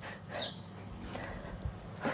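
A woman's faint, short breath about half a second in, taken while working through a modified push-up, over low steady background noise.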